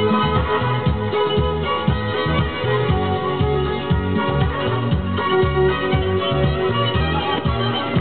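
Recorded music, with a steady beat, playing back from a ferro (Type I) cassette on a Vega MP 120 Stereo cassette deck.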